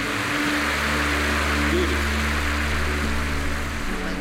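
A steady rushing noise over sustained low background-music tones; the deepest tone drops out just before the end.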